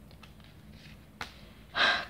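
Quiet handling of a tarot deck with a single sharp click about a second in as a card is laid down, then a quick, audible breath in near the end.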